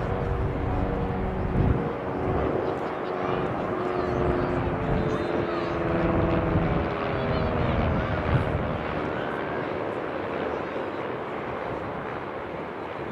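A droning engine holds a steady pitch, then bends lower in the second half, as if it is passing by. There is a low rumble underneath.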